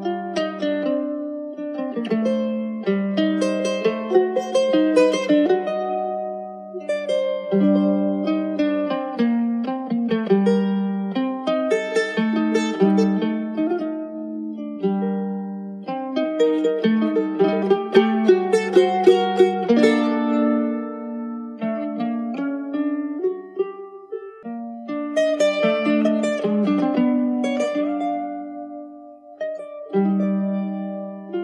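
Instrumental choro played on plucked string instruments: a quick, ornamented high melody over lower bass notes, moving phrase by phrase with short breaths between them.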